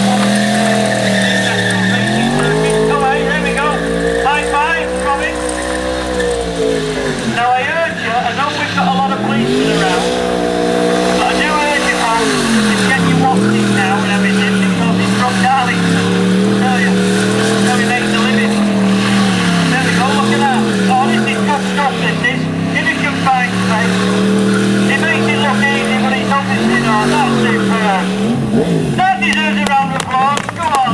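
Yamaha R1 sportbike engine held at high revs through a rear-tyre burnout, the revs sagging and climbing back several times, with the spinning rear tyre squealing on the tarmac.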